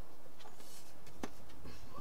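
Light handling sounds as a steel ruler is laid onto foam board, with one short click about a second in.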